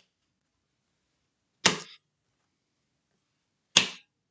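Two quick snaps of tarot cards being laid down on a table, about two seconds apart, each brief and sharp.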